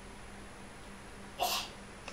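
A single short, sharp burst of breath from a person, sneeze-like, about one and a half seconds in, over a faint steady hum.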